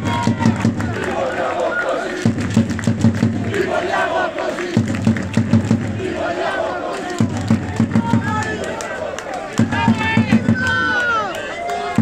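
Football supporters chanting together, with a drum beaten in short runs of strokes about every two and a half seconds and shouts rising above the chant.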